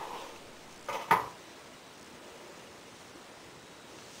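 A soft brushing sound at the start, then two quick hard clacks about a second in, like a plastic hairbrush being set down on a bathroom counter; after that only faint room hiss.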